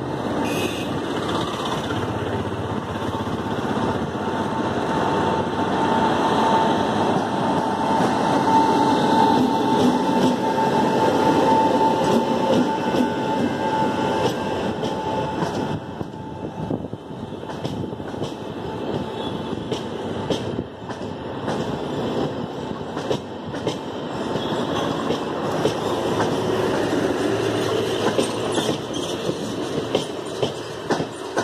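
WAP-7 electric locomotive and LHB passenger coaches running past: a steady rumble of wheels on rail, with a thin whine through the first half. From about halfway, the coach wheels give sharp clicks over the rail joints.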